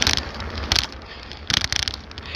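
Rattling and rubbing noise from a bicycle being ridden while a phone is held, with wind on the microphone: three short noisy bursts, the longest near the end, over a steady low rumble.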